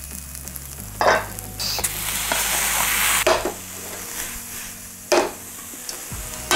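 Diced onion frying in a stainless steel frying pan, a steady sizzle broken by a few short scrapes and knocks of a spatula: about a second in, around three seconds and just after five seconds. Chopped tomatoes go into the hot pan during it.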